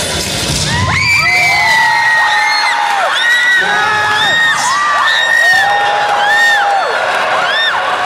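Many high voices screaming and cheering at once in overlapping long calls, each bending up at the start and down at the end. A lower, denser sound fades out about a second in.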